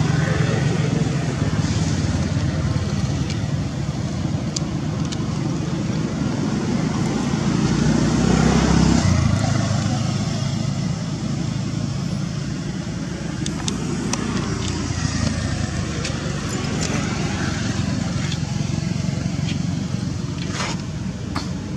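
Steady low rumble of passing road traffic with faint voices in the background. It swells to its loudest about eight or nine seconds in, then drops away.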